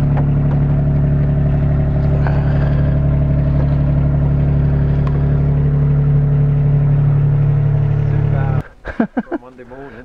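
Forklift engine running steadily at idle, then switched off abruptly near the end, once the lifted boat hull is resting on its pivot.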